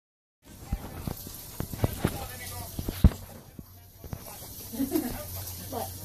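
A run of sharp knocks and clicks close to the microphone, the loudest about three seconds in, followed near the end by a few short, gliding vocal sounds from a baby.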